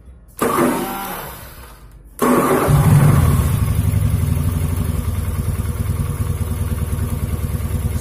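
Carbureted Honda Beat scooter's single-cylinder engine being electric-started on a freshly fitted NGK spark plug: a short burst that fades, then about two seconds in it catches and settles into a steady run. It starts quickly but sounds fairly rough, which is usual for the carburetor Beat.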